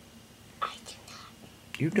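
Soft whispered syllables about half a second in, then a voice starts speaking near the end.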